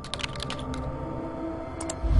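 Computer keyboard typing: a quick run of key clicks in the first second, then two more clicks near the end, over a faint steady musical drone.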